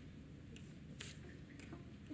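Quiet hum of a large room with a few faint small clicks and one sharper click about a second in.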